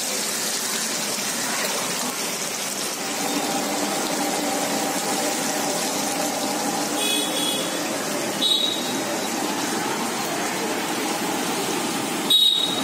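Beef bondas deep-frying in a large iron kadai of hot oil, a steady sizzle.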